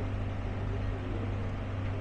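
A steady low mechanical hum over even background noise, with faint distant voices.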